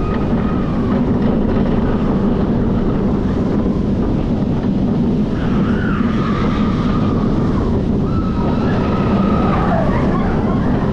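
Intamin launched steel roller coaster train running fast along its track, a steady rumble of wheels on the rails under heavy wind noise on the front-seat microphone. High drawn-out wailing tones come and go, about five seconds in and again near the end.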